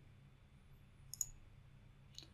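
A single computer mouse click about a second in, against quiet room tone.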